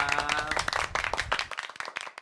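Applause that starts about half a second in, just as a drawn-out spoken goodbye ends, and then fades away.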